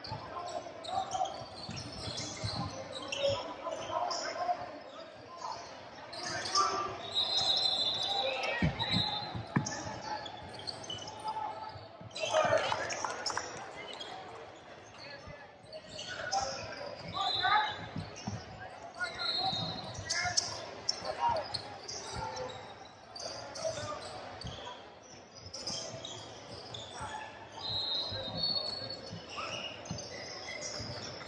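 A basketball being dribbled and bounced on a hardwood gym floor during play, with distant voices of players and spectators echoing in the large hall. Several short high squeaks come and go throughout.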